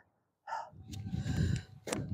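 Half a second of silence, then a short audible breath, followed by low rumbling, rustling noise such as wind or handling on the microphone.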